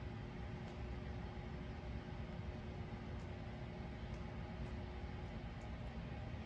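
Steady low room noise with a faint constant hum, broken only by a few faint ticks.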